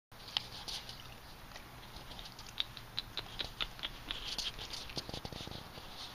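Beagle's claws ticking irregularly on a tiled patio as it walks and sniffs about, with a few duller knocks about five seconds in.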